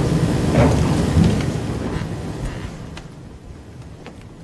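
Audience applauding, dying away over the last second or two.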